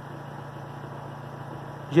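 Car engine idling with a steady low hum.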